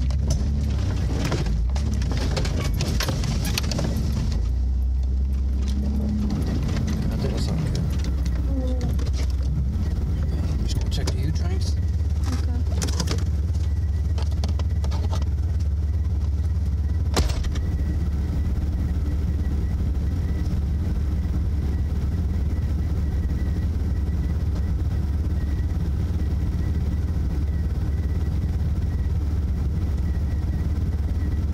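A 4x4's engine running low and steady, heard from inside the cab. Branches scrape and crackle along the body for about the first ten seconds, a single sharp click comes a little past halfway, and then the engine idles steadily.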